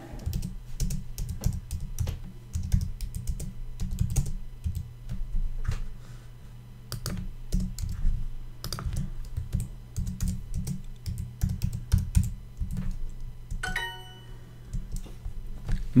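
Typing on a computer keyboard: irregular key clicks throughout as a sentence is typed in. Near the end comes a short ringing chime from the Duolingo app, its sound for an answer accepted as correct.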